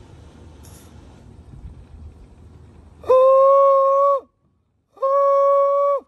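Pūtōrino, the Māori wooden trumpet-flute, blown in its trumpet voice: two steady held notes of about a second each, the first about three seconds in and the second after a short pause.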